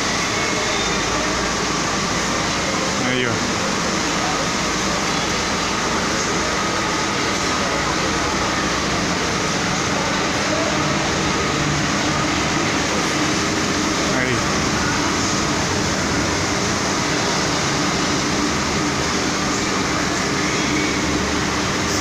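Steady drone of idling coaches, their diesel engines and air-conditioning units running.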